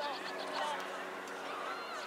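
Distant voices of players and spectators calling out and chattering across an outdoor soccer field, with a faint steady hum underneath.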